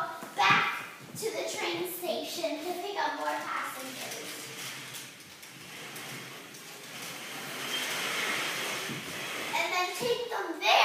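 A young child's voice, speaking or vocalising indistinctly in short bursts during play, then a few seconds of soft, steady hissing in the second half.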